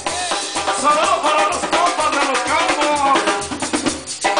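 Live banda music: a drum kit keeps a steady beat under repeating bass notes and a gliding melody line.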